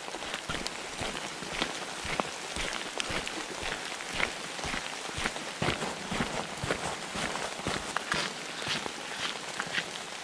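Steady rain with irregular sharp taps of raindrops, and footsteps on a wet gravel road.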